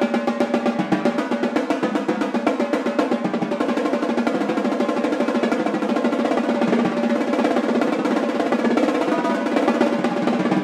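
Double stroke roll (RRLL sticking) played on marching tenor drums, the strokes starting open and speeding up into a dense, even roll.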